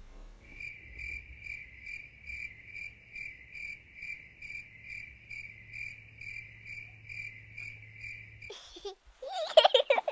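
Crickets-chirping sound effect: an even run of chirps, about three a second, used as the comic 'awkward silence' gag. It cuts off abruptly near the end, and a loud burst of sound follows in the last second.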